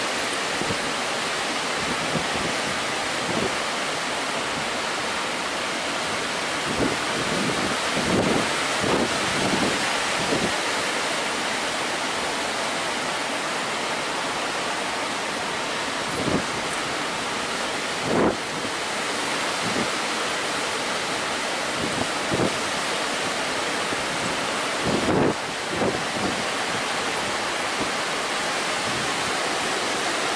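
Atlantic surf breaking on a sandy beach, a steady rushing wash, with wind buffeting the microphone in a few short gusts.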